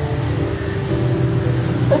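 Acoustic guitar playing soft sustained chords as background accompaniment, over the steady noise of street traffic with passing motor tricycles.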